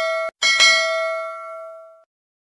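Bell-chime sound effect of a notification bell. The ringing of one double strike cuts off suddenly, then a second double strike comes about half a second in and rings on, fading away.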